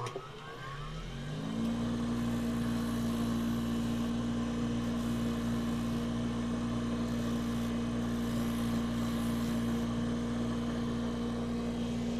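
Bench grinder's electric motor starting up, its whine rising over about a second and a half, then running at a steady hum. A custom orthotic's top cover is ground down against the sanding drum to shorten it to fit a shoe.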